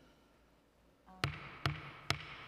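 Wooden gavel rapped twice on the dais, two sharp knocks less than half a second apart a little over a second in, calling the hearing to order.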